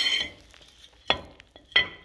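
Brake rotor and hub being handled by hand: a high metallic ring fades away in the first moment, then two sharp metal clinks come about two-thirds of a second apart, the second ringing briefly.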